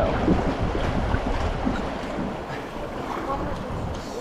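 Wind buffeting the microphone over the steady rush of river water around an inflatable raft, with faint voices.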